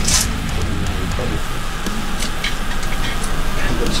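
Screw cap twisted off a new bottle of Suntory Toki whisky, its seal breaking with a sharp click and a few lighter clicks, over steady background music.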